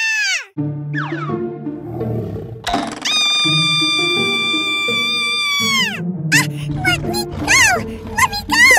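A young girl screaming in a high, held pitch: a short scream that drops off about half a second in, then a long one from about three to six seconds in that also falls away at its end. Quick, squeaky rising-and-falling cries follow near the end. Children's background music plays underneath.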